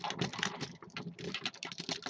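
Rapid, irregular clicking and rattling of the hard plastic parts of a Transformers Robots in Disguise Railspike figure as it is handled and pieces are fitted together.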